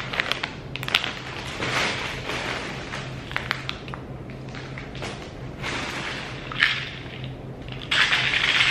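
Plastic and paper packaging crinkling and rustling as store-bought items are handled and held up, with a few sharp taps and crackles, the loudest about two-thirds of the way through, over a faint steady low hum.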